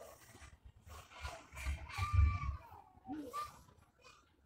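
Faint animal calls: a drawn-out call that rises and falls in pitch from about a second in, and a short call near the end. A low thump, the loudest moment, comes between them.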